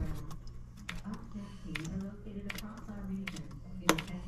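Trigger spray bottle squirting leak-check bubble solution onto the copper joints of a pressurized evaporator coil: a series of short sprays and trigger clicks. A low wavering hum runs underneath.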